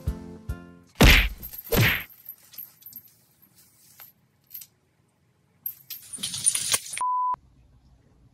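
Background music ends, then two loud brief scuffling noises about a second apart from cats playing with a tinsel wand toy on a wooden floor, followed by softer scuffles. Near the end comes a short steady electronic beep.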